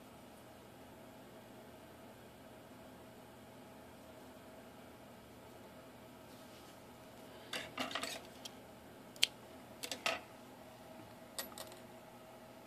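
Quiet room tone, then from about seven and a half seconds in a scatter of small, sharp clicks and rustles as hands handle yarn and a metal sewing needle while finishing off a yarn tail.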